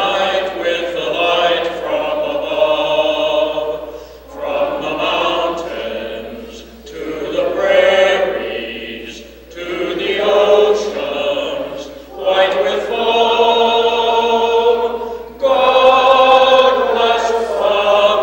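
A man singing unaccompanied into a microphone in long held phrases with short breaks between them, other voices joining in.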